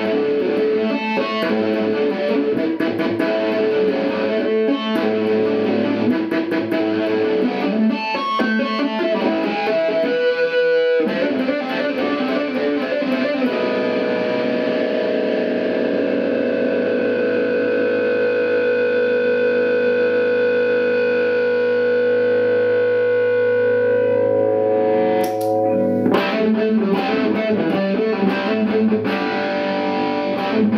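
Distorted electric guitar through an amplifier: fast shred runs, then one long held note ringing steadily for about twelve seconds, cut off by a sharp noise near the 25-second mark, and fast runs again near the end.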